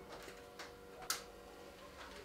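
Two sharp metallic clicks about half a second apart, the second louder, from a steel cooking pot and the fittings of a gas burner mounted on an LPG cylinder as the pot is handled on the burner.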